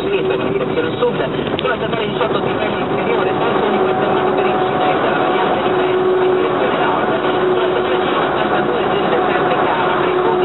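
DAF truck's engine and road noise heard from inside the cab while cruising on the motorway, a steady drone with a constant hum.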